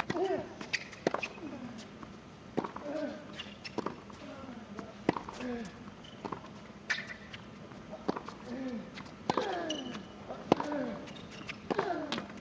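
Tennis rally on a hard court: a serve and then crisp racket strikes on the ball, one about every second to second and a half. Most strikes come with a short grunt from the player, falling in pitch.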